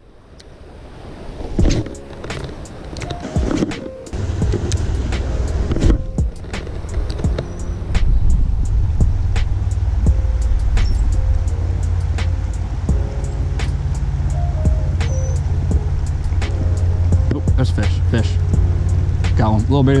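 Spinning reel cranked through retrieves, with rapid sharp ticking and brief whirring stretches, over a steady low rumble that swells about eight seconds in.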